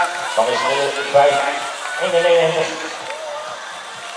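A male announcer speaking Dutch in short phrases over a public-address loudspeaker, with steady outdoor background noise.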